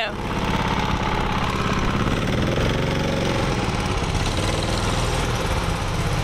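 Go-kart engine running steadily as the kart drives around the track, an even, unbroken engine drone.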